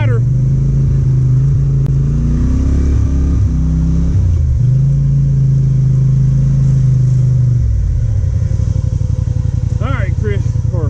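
ATV engine running steadily, its revs climbing and shifting between about two and four seconds in, then dropping near the end to a lower, choppier idle.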